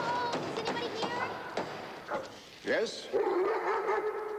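An iron door knocker banged several times against a heavy wooden door, followed by a German shepherd barking and whining as the door is opened.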